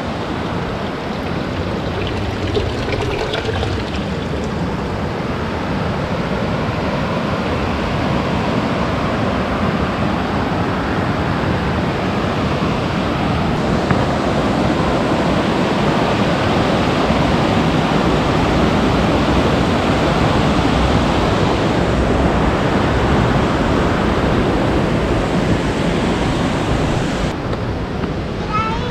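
Mountain stream rushing over rocks and small cascades, a steady loud rush that grows somewhat louder toward the middle.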